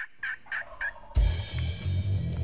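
Four short turkey yelps, about three a second. Background music with a heavy drum beat then comes in a little after a second in.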